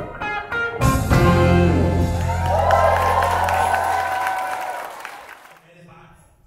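Live country band with electric guitars, bass and keyboards ending a song: the whole band hits a final chord about a second in, and the chord, with a deep bass note, rings out and fades away to almost nothing near the end.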